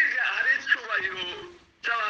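Speech only: a person talking continuously, with a short pause near the end.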